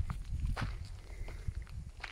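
Footsteps of a person walking on a gravel and grass track, a run of irregular short steps.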